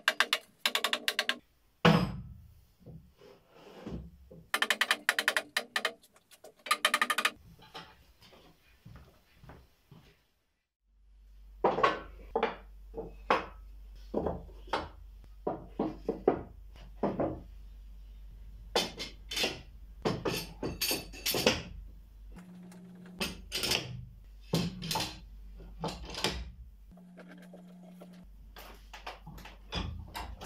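Wooden boards knocking and clattering against each other and the workbench as they are laid out and fitted together into a tabletop, with metal clamps being handled; many irregular knocks, and a steady low hum comes in about a third of the way through.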